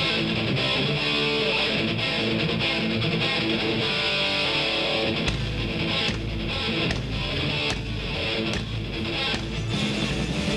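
Live rock band opening a heavy-metal song. Electric guitar plays alone at first, then drums and bass come in with heavy low hits about five seconds in.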